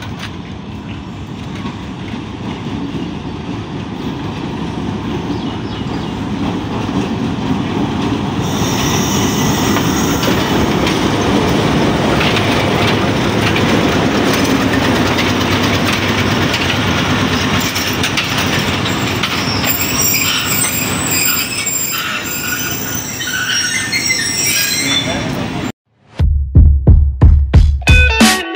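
Passenger train hauled by a Pakistan Railways PHA-20 diesel-electric locomotive, running into the station with its coaches rolling past. The rumble grows louder over the first several seconds and then holds, with high wheel squeal as the train slows. Near the end it cuts off abruptly and music with a heavy beat starts.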